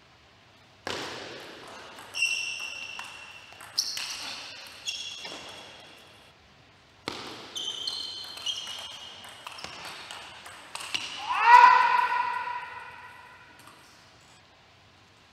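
Table tennis rallies: the plastic ball clicks sharply off bats and table, each hit leaving a short high ring, in two runs of strokes with a brief pause between. Near the end a player gives one loud shout, the loudest sound, lasting over a second.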